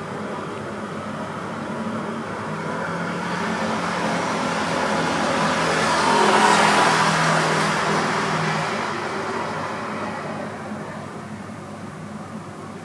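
A vehicle passing by, its noise slowly building to a peak about six and a half seconds in and then fading away.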